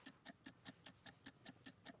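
A faint, fast, even ticking of about five ticks a second: a countdown-clock sound effect running under an on-screen countdown.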